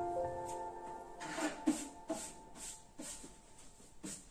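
Background piano music, its last held notes dying away in the first second or so, followed by a run of soft short rustles and taps, about two a second.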